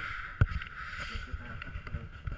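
Low rumble of a moving passenger train heard from inside the carriage, with a steady high hum over it and one sharp knock about half a second in.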